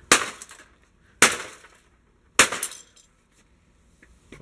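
Sledgehammer striking an old Apple G3 computer's sheet-metal chassis and beige plastic case three times, about a second apart. Each blow is a sharp crash followed by a brief clatter of metal and debris.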